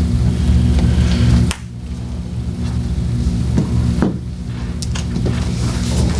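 Steady low electrical hum, a few even tones that don't change. Its lowest part drops away about one and a half seconds in, and a few light clicks and rustles sound over it.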